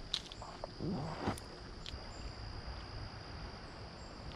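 Steady high-pitched insect chirring from the summer woods, with a few faint clicks and rustles.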